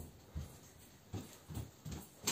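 Faint footsteps indoors: about five soft, low thuds roughly half a second apart.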